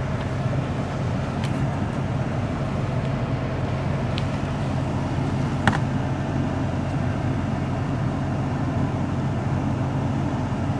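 Pickup truck engine running steadily as the truck rolls slowly, heard from inside the cab. A few light clicks come through, the sharpest a little past the middle.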